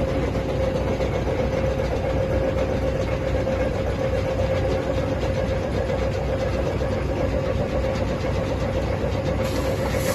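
HZS75 concrete batching plant running on its test run: a steady machine rumble with a constant mid-pitched whine from its motors and conveyor drive.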